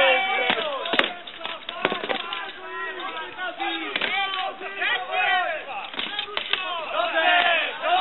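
Weapons striking shields and armour in an armoured medieval duel: an irregular string of sharp clangs and knocks, the loudest about a second in and near four seconds in, over shouting voices.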